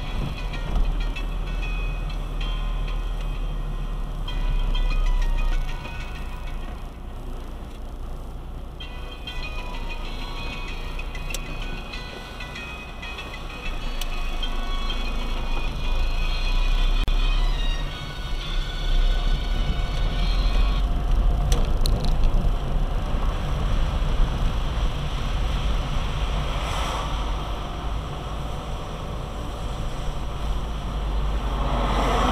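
A car's engine and tyres rumbling low inside the cabin as it drives on a wet road, with music playing over it.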